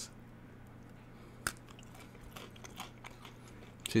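A person chewing a crunchy chocolate cookie close to the microphone: one sharp crunch about one and a half seconds in, then faint crackling chews.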